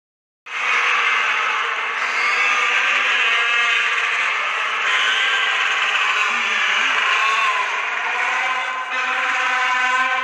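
Several crested penguins calling loudly at once, their overlapping calls forming one unbroken chorus.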